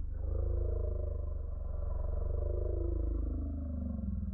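A deep growl with a fast rumbling flutter, and slow rising and falling tones above it.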